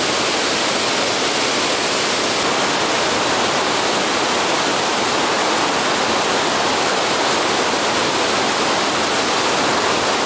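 Steady, unbroken rush of Murchison Falls, where the Nile is forced through a rock gorge less than 10 m wide. It is a dense, even hiss of falling water, with more hiss than deep rumble.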